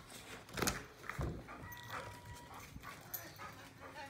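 A pet dog close by, making small sounds: a few soft knocks or taps and, about halfway through, a faint thin whine.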